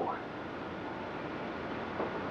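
Steady background hiss, room tone with no distinct sound events.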